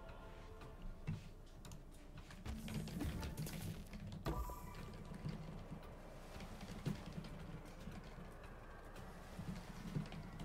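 Online slot game audio: quiet background music with the clicks and thumps of the reels spinning and landing during free spins, a sharp hit about four seconds in.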